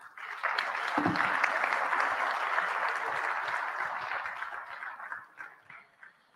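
Audience applauding, a dense patter that builds in the first half-second and dies away near the end.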